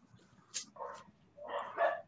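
A dog barking a few short times, faint and coming through a video-call connection.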